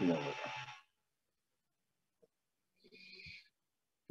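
A man's voice lecturing in Spanish finishes a word, then dead silence as the call's audio gates off. A faint, brief sound comes about three seconds in.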